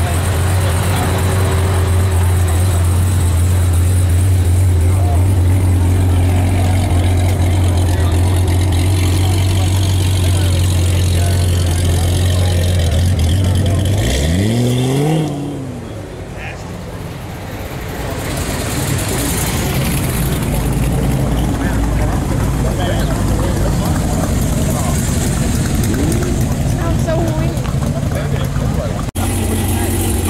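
Camaro ZL1's supercharged V8 idling close by with a steady low note. About halfway through, the engine revs sharply as the car accelerates away, and the note fades into the distance.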